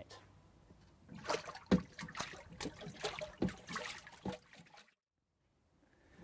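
Water sloshing and splashing in a small acrylic wave tank as waves are made, in a run of irregular splashes that cuts off suddenly about five seconds in.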